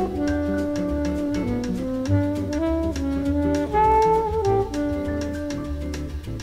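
Instrumental jazz music: a horn melody of held notes moving up and down over a bass line and a steady percussion beat.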